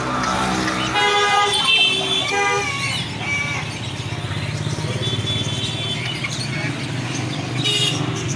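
Street traffic, with vehicle engines running steadily and a horn sounding from about one to three seconds in.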